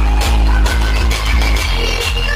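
Electronic dance music played at high volume through a large DJ speaker stack during a sound test, dominated by very heavy bass with a steady beat of about two a second.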